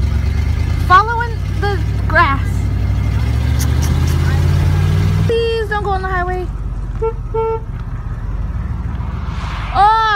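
Car engine running, heard from inside the car, its pitch rising steadily as it speeds up, then cut off suddenly about five seconds in, leaving a lower, steadier rumble.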